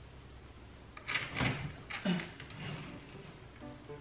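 A plastic ice chest being tugged at and shifted on a shelf: a few short knocks and scrapes about a second in and again around two seconds. Background music comes in near the end.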